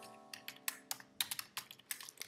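Typing on a computer keyboard: a quick, irregular run of key clicks, about a dozen in two seconds.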